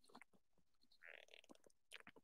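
Near silence, with a faint gulp about a second in as beer is swallowed from a bottle.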